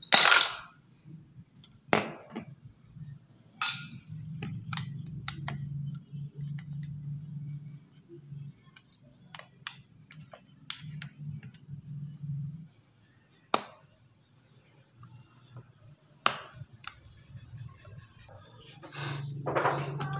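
Hands and a screwdriver working on a disassembled power-sprayer water pump: scattered sharp clicks and knocks of plastic and metal parts, a few seconds apart, as the pump is being opened to check its seal valve.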